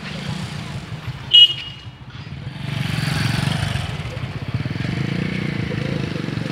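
A motor vehicle engine running with a low, steady throb, a short high-pitched horn toot about a second and a half in, then the engine noise growing louder and staying up.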